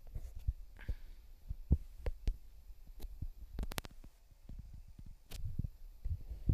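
Faint handling noise from a phone being held and worked by hand: scattered soft low thumps and a few sharp clicks, with a quick cluster of clicks about three and a half seconds in.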